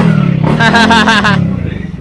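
Yamaha NMAX scooter, bored up to 180 cc, running at idle with a brief, slight rise in revs about halfway through, under a man's voice.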